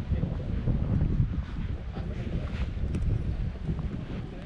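Wind buffeting the camera microphone, a low, uneven rumble that rises and falls throughout.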